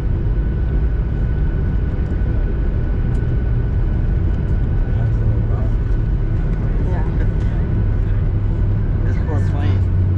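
Cabin noise inside a Boeing 737-800 taxiing after landing: a steady low rumble from the engines and airframe with a thin, steady whine above it. Faint voices come in near the end.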